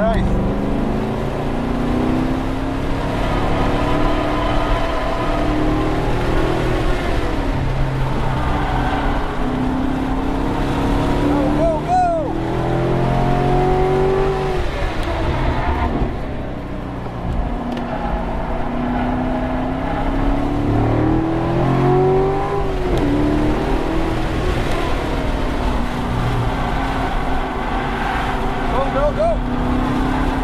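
Chevrolet Corvette C7 Grand Sport's 6.2-litre V8 heard from inside the cabin while lapping a track. The engine climbs in pitch under throttle and falls away between pulls, with sharp drops about twelve, sixteen and twenty-three seconds in.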